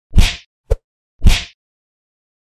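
Intro-animation sound effects: two heavy punch-like hits about a second apart, each fading quickly with a swishing tail, and a short sharp click between them.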